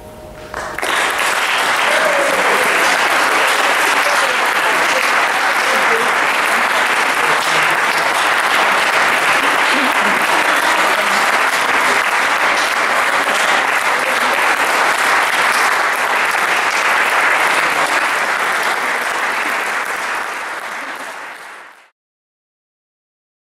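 Audience applauding. The clapping swells up about a second in, holds steady, then fades out near the end.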